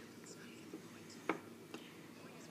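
Faint whispering with a single light tap about a second in, as a small plastic toy figure is set down on a tile floor, and a softer tap soon after.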